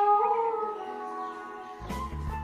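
A girl's voice holding a long sung note that wavers in pitch and fades. Acoustic guitar strumming comes in near the end.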